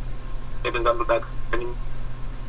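A man speaking, a short phrase and then a single word, in a thin, narrow voice like one heard over a telephone line, over a steady low hum.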